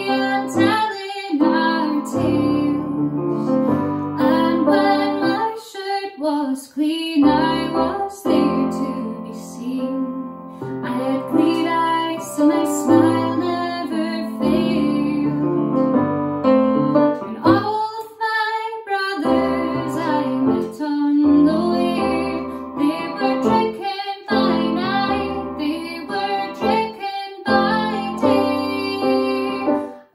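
A woman singing, accompanying herself on a Roland digital piano.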